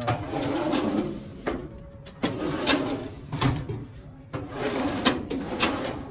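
Steel filing-cabinet drawers pulled open and pushed shut, the metal drawers sliding and clacking in a string of sharp knocks.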